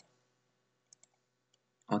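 Two faint computer mouse clicks, close together, about a second in, in otherwise near silence.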